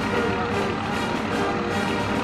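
Music with held melodic notes changing in pitch every half second or so.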